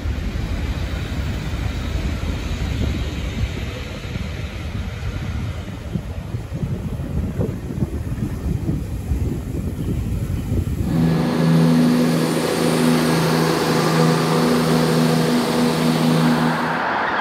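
Heritage train of coaches hauled by a steam locomotive rolling slowly past along the platform, a low rumble and irregular clatter of wheels on the rails. About 11 s in, it cuts suddenly to a steady hum with two low, constant tones from a modern train standing at a platform.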